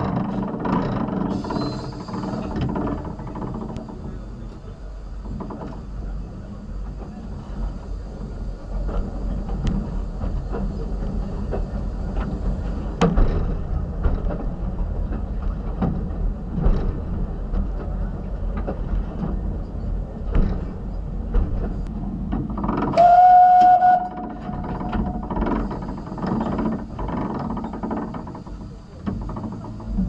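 Cab sounds of the narrow-gauge steam locomotive Palmerston: a steady low rumble with scattered clicks and knocks from the footplate. About 23 s in comes one short, loud whistle blast of about a second.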